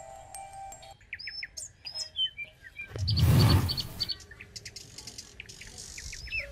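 Birds chirping and tweeting, with a short loud whooshing rush about three seconds in that lasts under a second. A held music chord cuts off about a second in.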